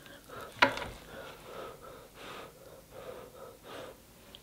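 Quiet handling of food at a table, with faint breathing: one sharp click just over half a second in, then soft small noises as a piece of crab is worked in sauce.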